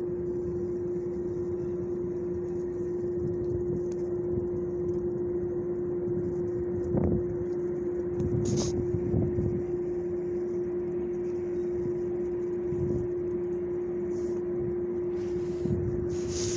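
A steady mechanical hum holding one constant pitch over a low rumble, with a few brief dull bumps in the middle.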